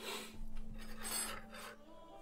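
A person's hard, rasping breaths through the mouth, about three in quick succession, drawn in and blown out to cool the burn of a ghost-pepper sriracha.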